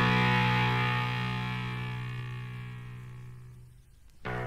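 Sustained distorted electric guitar chord from a punk rock track ringing out and slowly fading, dying away almost to silence near the end.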